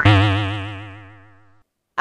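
Cartoon 'boing' comedy sound effect: a wobbling, warbling twang that fades out over about a second and a half.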